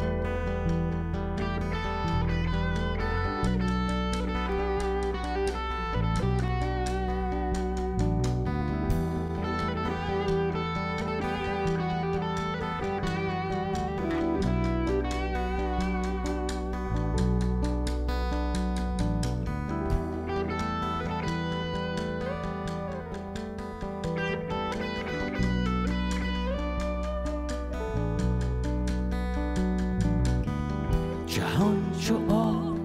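Rock band playing an instrumental passage, with an electric guitar picked over sustained bass notes and drums.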